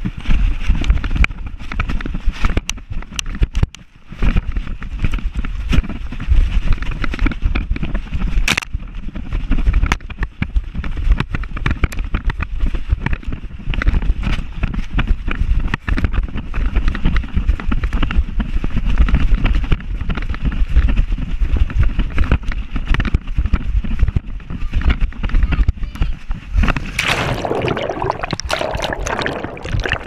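Heavy, irregular rumble of wind and jostling on a microphone strapped to a running dog's back, with many small knocks. Near the end it gives way to splashing and gurgling water as the camera goes under.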